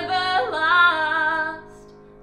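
A woman singing a drawn-out, wavering line over chords held on a Roland digital piano; her voice fades out about one and a half seconds in, leaving the piano chord sounding quietly.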